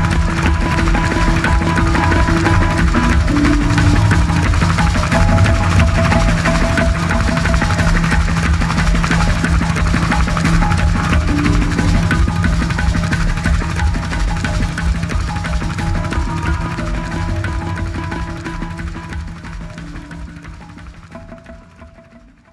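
Background music with a held low drone and busy percussion, fading out over the last several seconds.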